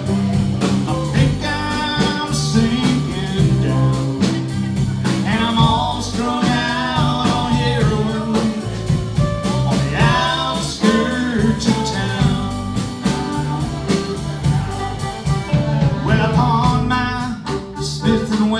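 A live band plays a song together: a drum kit keeps a steady beat under bass, acoustic and electric guitars and keyboard, with a melodic lead line over the top.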